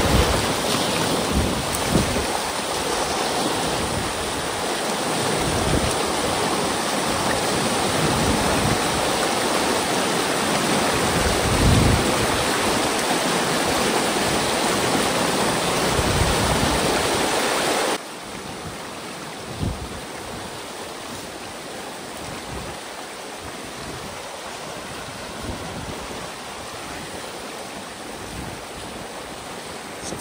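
Muddy water rushing through a breach in a beaver dam and down a ditch, a steady rushing noise. About two-thirds of the way through it drops abruptly to a lower, still steady level.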